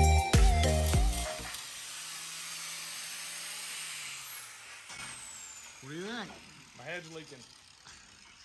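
Background music for the first second and a half, then a hand-held grinder grinding the edge of a transmission case with a steady hiss. It spins down about four and a half seconds in, and a few faint voices follow near the end.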